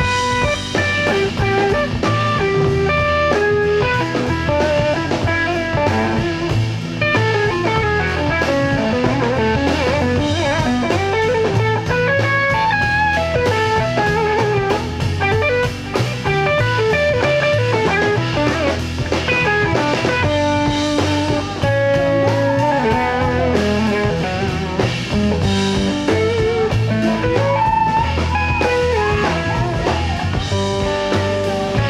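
Live band music with no singing: a Telecaster-style electric guitar plays a lead line over a drum kit and upright double bass, in a bluesy groove.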